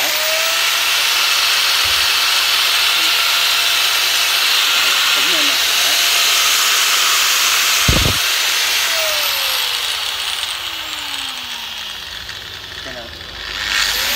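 Hitachi 100 V, 1010 W angle grinder with a 125 mm disc running free with a steady high whine. About nine seconds in its whine falls away as it winds down, then it spins back up just before the end, rising gradually from slow to fast with its soft start. A single knock about eight seconds in.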